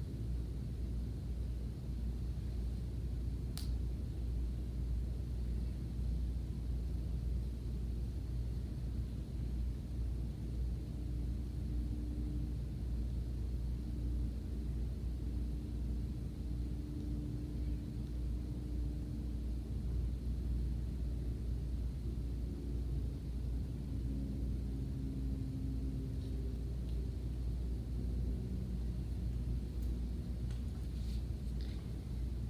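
Steady low rumble of indoor room noise with no speech, and a single faint click about four seconds in.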